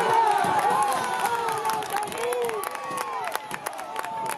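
Several voices shouting and cheering at once, with scattered claps, in reaction to a base hit that scores a run. The shouting is loudest about the first second and then settles.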